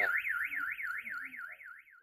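Car alarm siren warbling rapidly up and down, about five sweeps a second, growing fainter near the end.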